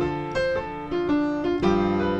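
Piano playing a jazz II–V–I chord sequence: two-note left-hand shell voicings held low while the right hand plays arpeggio notes of each chord above. A new chord is struck about a second and a half in.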